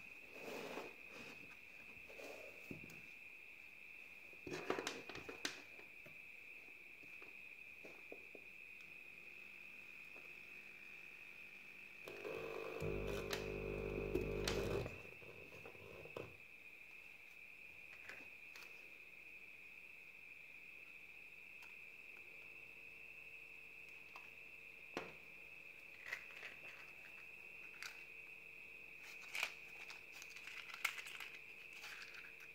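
Hands handling a breadboard circuit and small speaker on a wooden desk: scattered light clicks and knocks, with a louder stretch of scraping and rustling about twelve to fifteen seconds in. A faint steady high-pitched whine sits underneath.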